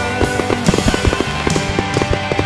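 Music playing through a fireworks display, with several sharp bangs and crackles from firework shells bursting over it.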